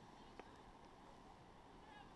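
Near silence: faint steady outdoor background noise, with one faint click about half a second in.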